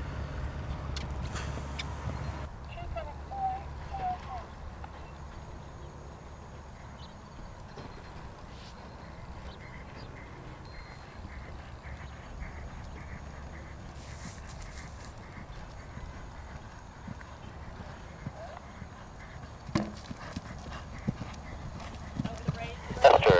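Steady low rumble of wind on the microphone, with faint hoofbeats of a horse cantering over dry ground, a few sharper ones near the end. Two short squeaks sound about three and four seconds in.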